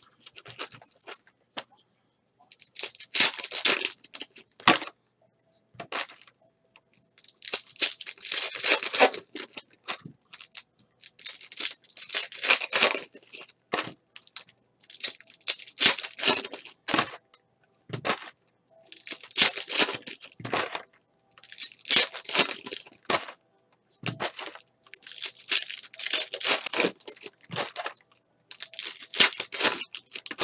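Foil trading-card pack wrappers being torn open and crinkled, one pack after another, in about ten bursts of sharp crackling a couple of seconds apart.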